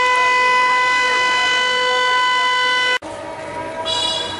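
A loud siren holding one steady pitch, cutting off abruptly about three seconds in.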